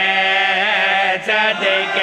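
A man's voice chanting a devotional qasida in long, melodic held notes that slide between pitches, amplified through a microphone, with a brief breath-break just over a second in.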